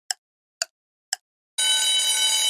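Countdown-timer sound effect: clock ticks about two a second, then about one and a half seconds in a steady ringing bell, like a telephone bell, goes off as the timer reaches zero to signal that time is up.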